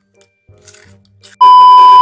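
A loud, steady electronic beep at one fixed pitch, starting about one and a half seconds in and lasting about half a second before it cuts off abruptly. Before it there are only faint, quiet sounds.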